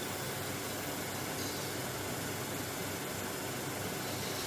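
Steady, even background hiss of room tone and microphone noise, with no distinct events.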